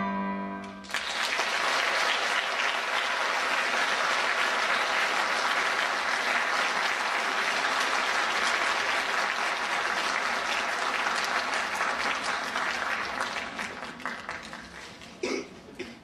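A held final sung chord ends about a second in, and an audience then applauds steadily. The applause dies away over the last couple of seconds.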